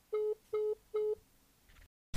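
Telephone call-ended tone after the other party hangs up: three short, identical steady beeps about 0.4 s apart, signalling that the line has disconnected.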